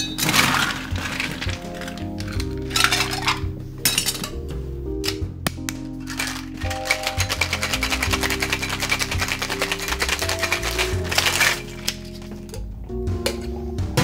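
Ice rattling inside a metal cocktail shaker as a cocktail is shaken: a few separate clinks and knocks at first, then a fast, continuous rattle for about five seconds that stops near the end. Background music plays under it.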